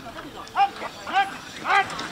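Short, high-pitched shouted calls repeated about twice a second, a person urging on the horse pulling a marathon-driving carriage.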